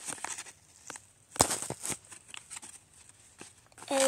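Paper crinkling and crackling in short, irregular snaps as a hand squeezes a homemade paper squishy stuffed with cotton, with one louder crackle about a second and a half in.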